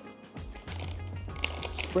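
Plastic snack packet crinkling as it is handled, with a quick run of small clicks and rustles in the second half, over background music with a steady bass line.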